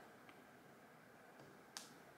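Near silence with a single short, light tap on a tablet's touchscreen near the end.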